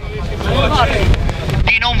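Wind buffeting the microphone as a steady low rumble, under a man's voice speaking through a handheld megaphone.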